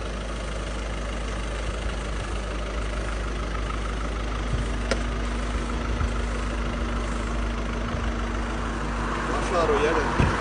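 Volkswagen Passat estate's engine idling steadily, with a single sharp click about halfway through.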